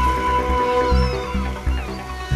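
Dramatic background music with a low bass pulse beating about twice a second under held tones, with faint high gliding tones in the middle.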